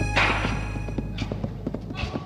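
Hand tools scraping and tapping in a metal wheelbarrow of wet cement mix: a short scrape near the start, then a run of quick, irregular light taps, over fading background music.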